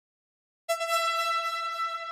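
A single electronic synth note starting abruptly after a brief silence, held at one pitch and slowly fading: the first note of an instrumental electronic beat.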